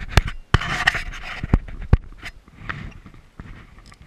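Clothing rustling and about five sharp knocks right against the microphone in the first two seconds, as a fly angler moves his arm and rod to cast, then quieter rustling.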